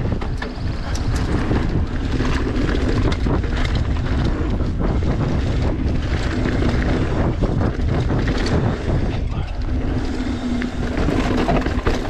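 Riding noise from a mountain bike rolling down a dirt flow trail: wind rushing over the microphone, tyres on dirt, and frequent rattles and knocks from the bike.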